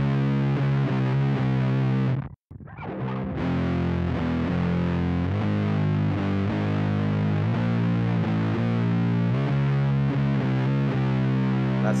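Heavily distorted electric guitar in C standard tuning playing a slow doom metal riff of sustained two-note intervals, built on the minor sixth and perfect fifth. The notes stop briefly about two seconds in, then the riff carries on.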